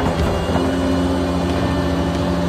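Rollback tow truck's engine running at a steady idle, with an even low drone.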